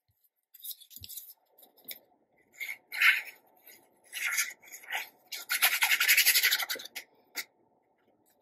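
Paper pieces being handled and rubbed, with short scratchy rustles and a denser stretch of rubbing about five and a half seconds in, lasting just over a second.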